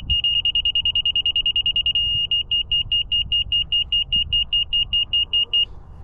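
Laser level receiver on a grade rod beeping in a high tone about six times a second. The beeps quicken into a steady tone for about a second, the receiver's signal that it sits dead level with the laser plane, then break back into beeping that stops shortly before the end.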